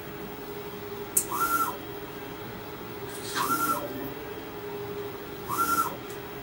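Mimaki UJF-3042 MkII e UV flatbed printer running a print job: a steady hum, with a short whine that rises and falls three times, about every two seconds, each with a brief hiss, as the print-head carriage makes its passes.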